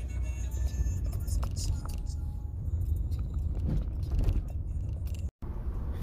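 Steady low rumble of a car heard from inside the cabin, with faint voices or music under it. The sound cuts out abruptly for a moment about five seconds in.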